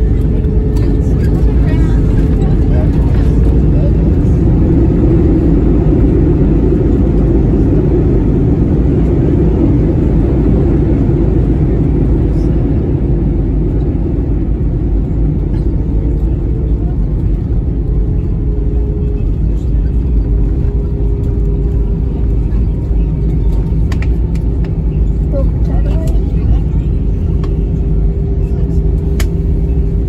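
Cabin noise of an Airbus A320-200 landing and rolling out on the runway: a loud, steady rumble that swells for several seconds after touchdown, then eases as the plane slows with its ground spoilers up.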